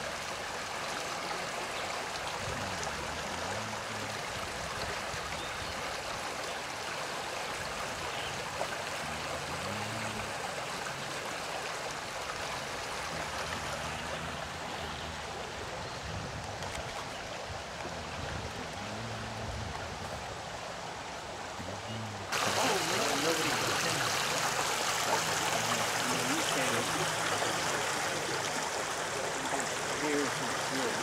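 Small stone-walled brook flowing steadily, a continuous rush of water over its stones. About three-quarters of the way through, the water sound jumps abruptly louder and brighter.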